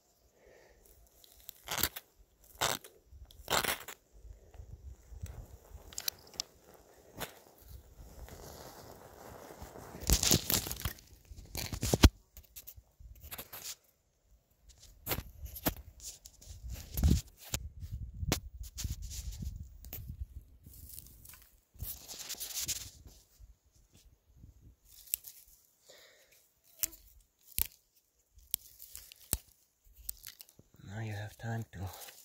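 Dry lichen tinder, twigs and bark crunching, tearing and crackling as a small campfire is lit and fed, with many short sharp clicks and a couple of louder hissing scrapes about ten and twenty-two seconds in.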